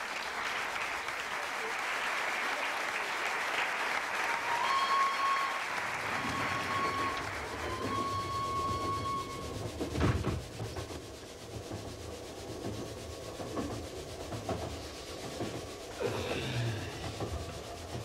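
Audience applause dying away under a railway sound effect: three short steady whistle toots, then the low rhythmic rumble of a train carriage running on the rails, with a single thump about ten seconds in.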